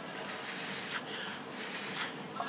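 A hookah being drawn on through its hose and mouthpiece: a steady airy rushing draw through the water base, briefly broken about a second in.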